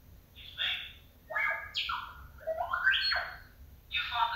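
Star Wars film sound played through the small speaker of a Hallmark Storyteller Death Star tree topper ornament: a run of chirping electronic beeps and whistles in short groups, several gliding up in pitch.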